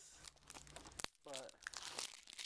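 Faint crinkling and light clicks of a plastic Blu-ray case and its packaging being handled, with one sharp click about a second in.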